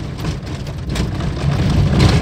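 A small car's engine running as it drives over a rough dirt road, with a steady low rumble and irregular knocks from the tyres and body on the bumps, heard from inside the cabin.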